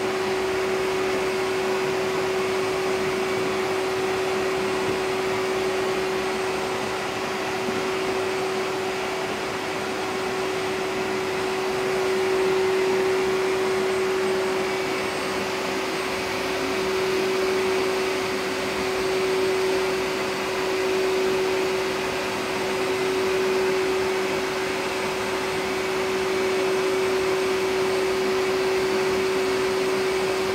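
A vacuum-type electric machine running steadily: a single constant hum over a rush of air, swelling a little now and then.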